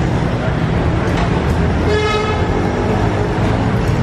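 Steady city street traffic noise, with a vehicle horn tooting briefly about two seconds in.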